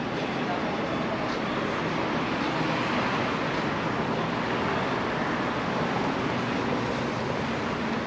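Steady street traffic noise, a continuous wash of passing vehicles that swells slightly a few seconds in.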